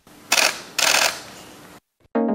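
Camera shutters clicking in two quick bursts, about half a second apart, each fading away.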